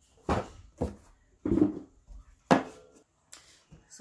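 Hard parts being handled and knocked together: four separate knocks and clunks in the first three seconds, from the pieces of a hair dryer stand, a matte gray base and a metal post.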